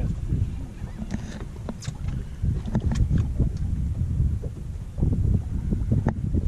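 Wind buffeting the microphone in an open boat, a dense irregular low rumble, with scattered small clicks and knocks.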